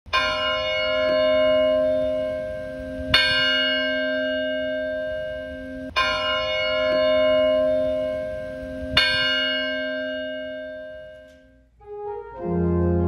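A church bell tolling four times on the same note, about three seconds apart, each stroke ringing on and slowly dying away.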